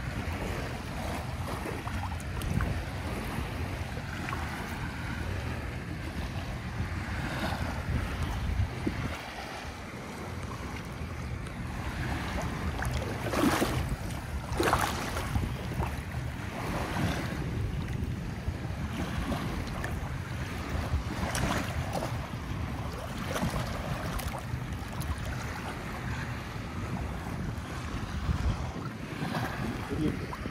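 Ocean surf washing in, with wind buffeting the microphone as a steady low rumble; a few brief, louder swishes come about halfway through.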